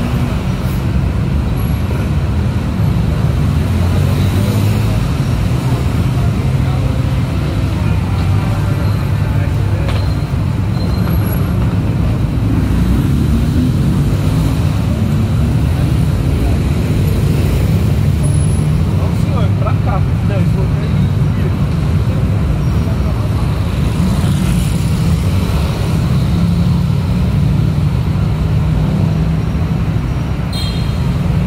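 Steady heavy road traffic: a continuous low rumble of engines and tyres, with passers-by talking at times.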